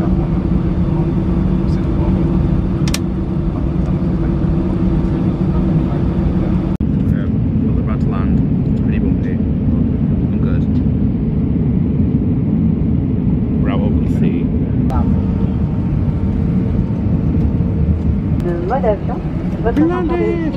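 Inside a jet airliner's cabin: loud, steady engine and air noise with a low hum, which changes abruptly about seven seconds in.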